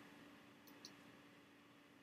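Near silence: room tone with a faint steady hum, and two faint, quick ticks a little under a second in.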